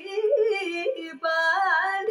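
A woman sings Carnatic vocal music solo, holding long vowels with fast wavering and sliding gamaka ornaments. The phrase breaks briefly a little past a second in, then a higher phrase follows.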